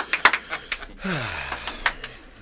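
One person clapping, a handful of claps through the first second. This is followed by a breathy vocal sound that slides down in pitch, like a sigh.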